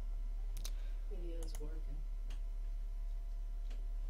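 Several separate sharp clicks, spaced unevenly, from the computer as moves of a Go game are stepped through on an on-screen board. A brief low murmur comes about a second in, over a steady low hum.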